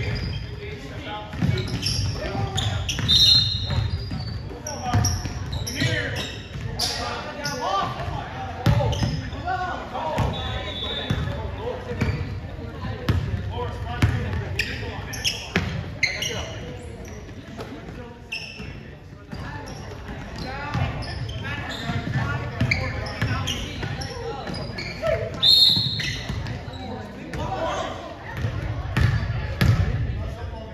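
Basketball bouncing on a gym's hardwood floor during play, repeated knocks echoing in a large hall, under indistinct voices of players and spectators.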